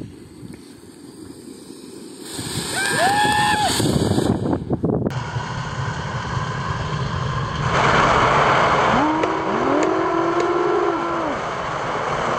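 Flower pot firework (anar) gushing a fountain of sparks with a loud rushing hiss, which grows louder about two-thirds of the way in. Long drawn-out calls that rise, hold and fall sound over it twice.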